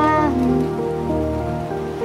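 Rain sound effect under instrumental music with held notes. A gliding note slides up and back down and ends about a third of a second in.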